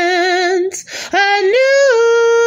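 A woman singing unaccompanied on wordless held notes. She holds a note with vibrato, takes a short breath about a second in, then holds another long note that steps up in pitch.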